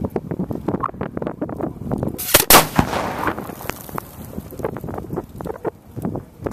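A 6-inch firework mortar fires a maroon shell: one loud bang a little over two seconds in, followed by a hiss that trails off over about a second.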